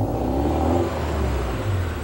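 A car engine running with a steady low rumble, cutting in abruptly.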